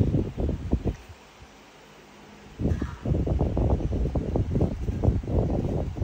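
Baby monkey sucking and gulping milk from a baby bottle, heard close up as rapid runs of short soft sounds: a brief run at the start, then a longer one from about two and a half seconds in.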